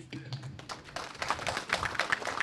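A group of people clapping, with many quick, irregular hand claps that start about half a second in and grow denser.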